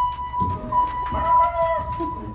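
A woman's high-pitched excited squeal, a little scream held on one note for nearly two seconds, with laughing voices under it.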